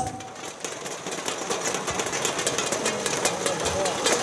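Light, scattered audience applause: many quick overlapping claps, building a little, small enough to be called a weak round of clapping.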